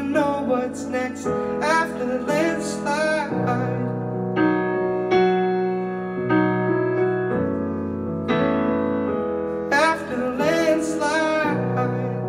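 Solo piano and male vocal performed live: a man sings a phrase over piano chords for the first few seconds, the piano carries on alone through the middle, and the voice comes back in near the end.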